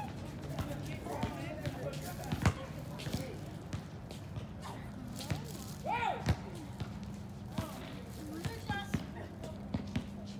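Irregular sharp thuds a second or more apart, the loudest about two and a half seconds in, with brief faint voices and a steady low hum behind.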